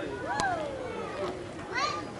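Players and spectators at a softball field calling out, with one long shout falling in pitch just after a sharp knock about half a second in, and more shouts near the end.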